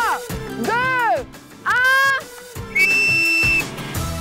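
Three rising-and-falling whistle swoops, each about half a second, then one steady high whistle note near the end, with music underneath.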